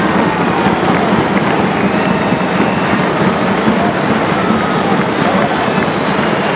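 Large crowd applauding steadily, with cheering voices rising over the clapping: a sustained ovation.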